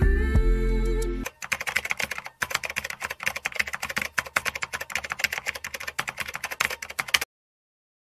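Music ends about a second in, giving way to rapid computer-keyboard typing clicks that run on and then cut off abruptly near the end.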